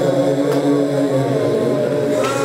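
Male reciter chanting a Shia mourning lament (na'i) in long held notes that slide slowly in pitch.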